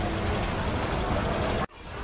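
Steady street-market background noise: a low rumble and hubbub with faint voices. It cuts off suddenly near the end, and a different steady noise takes over.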